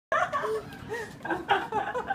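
A toddler laughing excitedly in short, high-pitched bursts.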